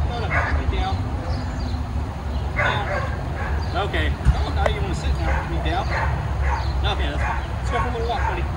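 Boxer-beagle mix dog yipping and whining, many short calls bending in pitch one after another, over a steady low rumble.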